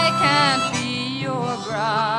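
Live folk song: a woman's sung note held with vibrato ends at the start over guitar accompaniment, then a harmonica comes in with a wavering held note about one and a half seconds in.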